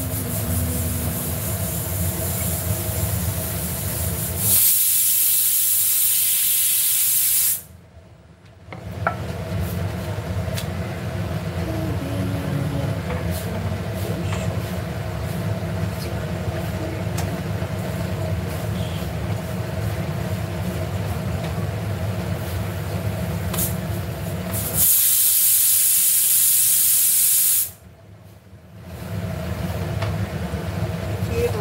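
Pressure cooker of mutton paya venting steam in two loud hissing bursts of about three seconds each, a few seconds in and again near the end, each cutting off sharply. Between them, the steady rush of the gas burner under the tawa.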